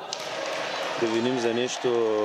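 A futsal ball kicked and bouncing on an indoor hard court, over the echoing noise of a sports hall; a man's voice comes in about halfway through.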